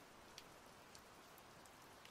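Near silence: a pause between sentences of narration, with only faint hiss.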